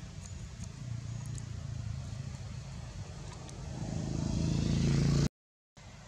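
A motor vehicle's engine humming and growing louder as it draws near, then cut off suddenly by half a second of dead silence.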